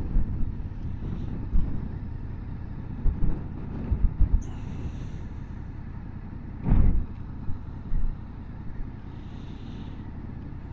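Motorcycle riding slowly through a junction, a low rumble mixed with wind buffeting the microphone in gusts, and a brief louder burst of noise about two-thirds of the way in.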